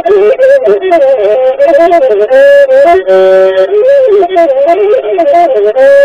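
Traditional Ethiopian azmari music: a masinko, the one-string bowed fiddle, playing an ornamented melody full of quick slides and turns, with a couple of briefly held notes about halfway through.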